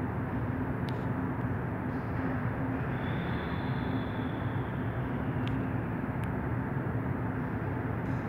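Steady low hum and noise of an underground metro station platform, with the track empty. A faint high tone sounds for about two seconds in the middle, and there are a few faint clicks.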